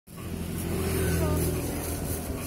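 Engine of a road vehicle running: a steady low hum that grows louder over the first second.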